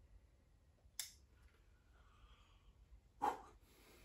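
A pocket lighter struck once with a single sharp click about a second in, lighting a flame to burn a playing card; otherwise quiet room tone, with a short louder sound just before the end.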